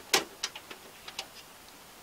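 Side cover of a slim desktop computer case being fitted back on: one sharp click, then a few lighter clicks in the next second.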